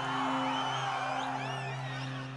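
Instrumental accompaniment of a Bhojpuri sad song with no singing: steady held low notes, and a high wavering melody line about halfway through, growing a little softer toward the end.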